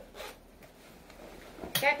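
Clothing zipper on a white khaki jacket being unzipped: one short rasp of the zip pulled open just after the start.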